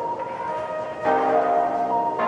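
Background music with sustained chords that change about a second in.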